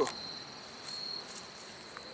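Crickets chirping in a steady high, thin trill, a little louder for a moment about a second in.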